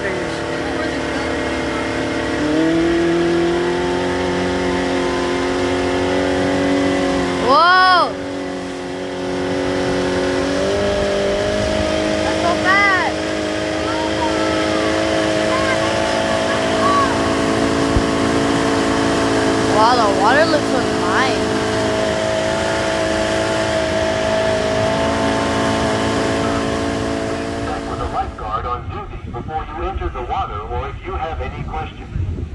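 A motorboat's engine running steadily under way, held short of full throttle, its pitch stepping up a couple of seconds in and again around eleven seconds, over a hiss of wind and water. Three brief, high, rising-and-falling cries break in around eight, thirteen and twenty seconds in, the first the loudest. The engine fades out near the end.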